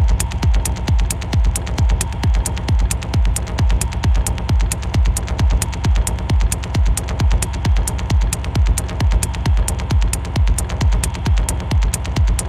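Hard techno: a steady, evenly spaced kick drum, each kick a deep thud falling in pitch, under quick ticking hi-hats and a held drone.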